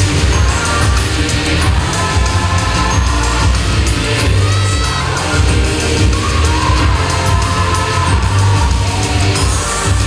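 Rock-tinged idol-pop song performed live over a loud concert PA, with female group vocals over a heavy bass beat.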